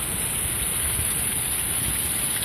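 Heavy rain falling in a steady, even hiss.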